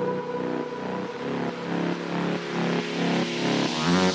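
Progressive trance music at a quieter breakdown with no kick drum: a pulsing synth over sustained pads, with a noisy sweep building near the end.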